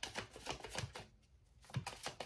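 A deck of tarot cards being shuffled by hand: a quick run of sharp card clicks, about six a second, that pauses about a second in and starts again near the end.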